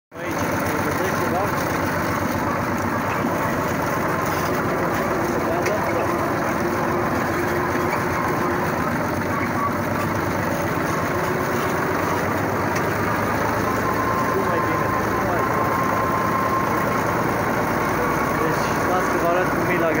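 Tractor engine running steadily, heard from the driver's seat while it pulls a hay rake across a field.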